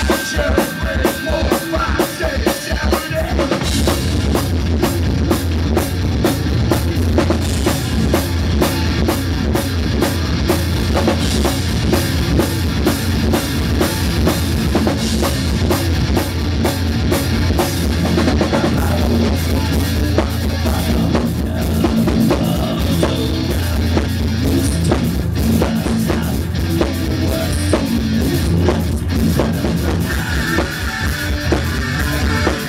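Live rock band playing loud: drum kit and electric guitar, with the electric bass coming in heavily about three to four seconds in and the full band then playing steadily.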